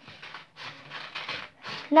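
Scissors cutting through a sheet of paper in long strokes, a crisp rasping crunch in three stretches with short breaks between them.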